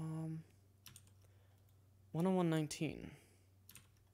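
A man's wordless voiced sounds: a held hum right at the start and a second, shorter hum about two seconds in, with a few faint computer-keyboard key clicks between them over a steady low electrical hum.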